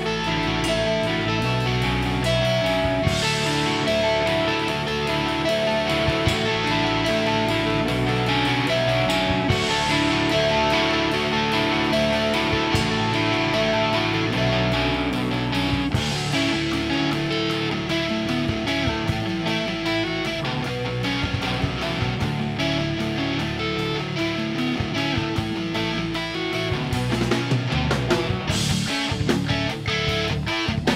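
Live rock band playing a song: electric guitars through amplifiers with bass and drum kit, running steadily. The cymbals open up about halfway through, and the drumming gets busier near the end.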